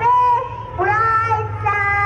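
Young children singing, with long held notes in two phrases over a steady low hum.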